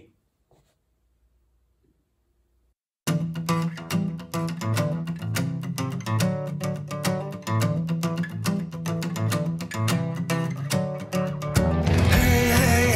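Near silence for about three seconds, then the instrumental intro of a studio-recorded pop-rock song starts abruptly: guitar over a quick, steady beat.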